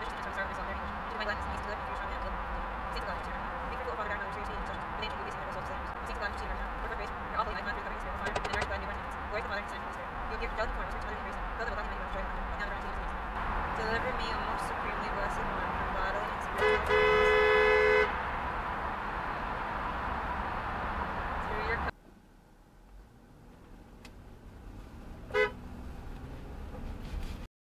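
Steady road and tyre noise from a car driving through a tunnel. A car horn sounds once for about a second, roughly two-thirds of the way in, and is the loudest thing heard. Near the end the noise drops suddenly to a quieter road hum.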